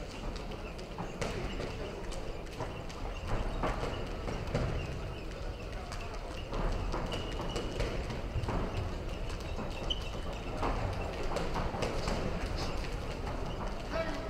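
Boxers' feet stepping and shuffling on a raised boxing-ring floor: irregular soft knocks and taps, over the steady murmur of a sports hall.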